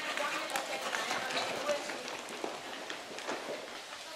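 Horse's hoofbeats on sand arena footing, soft and irregular, with people's voices faintly in the background.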